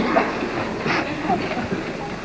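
Murmur of an audience and band chatting quietly between pieces, overlapping voices with no single speaker, and a brief clatter about a second in.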